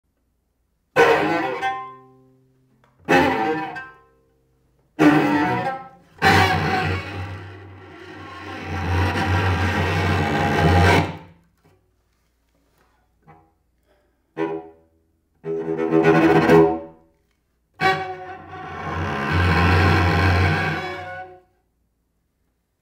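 Solo cello, bowed: three sharply attacked notes about two seconds apart, each dying away, then long sustained notes that swell in loudness and break off, with silent pauses between phrases.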